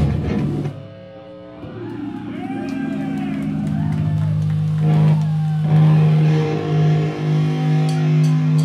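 A metal band's loud full-band playing cuts off abruptly just under a second in. Amplified electric guitar then rings out in sustained notes with bending, wavering pitches, and a low held note swells steadily louder.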